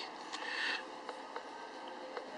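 A few faint, short clicks and a brief rustle of handling noise at low level.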